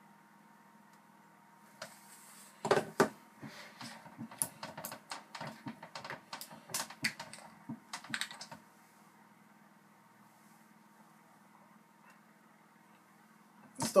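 Irregular sharp plastic clicks and crackles for about six seconds as a plastic milk jug is handled and its screw cap is twisted off, then quiet.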